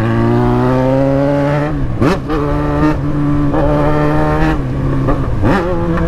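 Yamaha XJ6 600 cc inline-four engine running under way at steady revs, heard from the rider's seat. Its note briefly drops and sweeps back up about two seconds in and again near the end.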